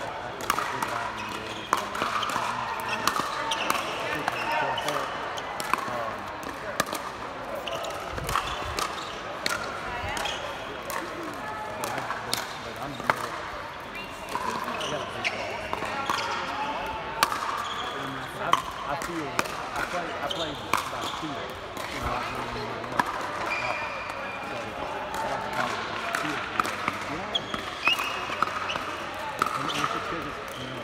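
Pickleball paddles hitting a plastic pickleball in rallies: a series of sharp pops at irregular intervals, over indistinct voices from the surrounding courts.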